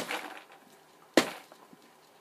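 Clear plastic orchid pot filled with bark mix tapped down hard on the work surface twice, about a second apart, to settle the bark around the roots.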